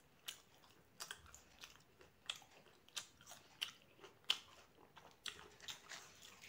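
Close-miked chewing of a raw tomato slice: soft wet mouth clicks and smacks at an irregular pace, about one or two a second, the loudest a little past four seconds in.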